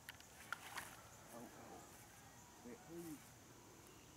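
Near silence: faint outdoor background with a few soft clicks in the first second and a brief, faint voice twice around the middle.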